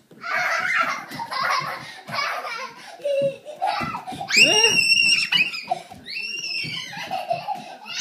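Young children laughing and squealing at play. Laughter fills the first few seconds, then come two long, high-pitched squeals, about four and about six and a half seconds in.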